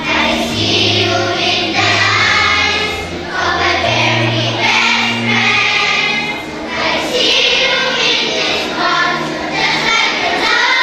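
Children's choir singing in held, flowing phrases.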